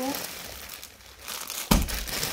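Clear plastic packaging of a packed suit crinkling as it is handled, with a sudden thump near the end as the packet is set down on the sheet.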